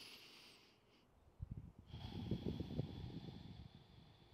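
A person breathing deeply: a hissing breath that fades out about a second in, then a slower, rougher breath out that lasts about two seconds.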